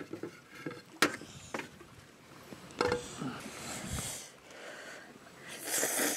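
A few light clicks and knocks of tableware, then near the end a loud, hissy slurp of instant ramen noodles being sucked up from a plate.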